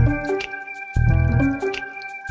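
Instrumental background music, with deep bass notes coming in about once a second under steady high tones and light high ticks.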